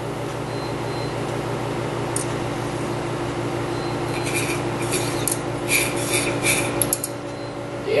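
Glassware clinking and rattling as it is handled, in a run of quick clinks about halfway through, over a steady low hum.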